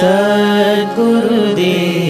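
Indian devotional music: a voice chanting over a steady drone.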